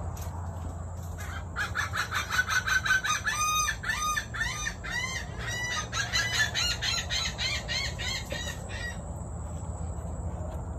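A bird calling in a long, fast run of repeated pitched notes, several a second, starting about a second and a half in and stopping about seven seconds later.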